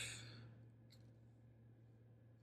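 A man's soft exhale, a sigh fading out within the first half second, then near silence with a faint tick about a second in over a low steady hum.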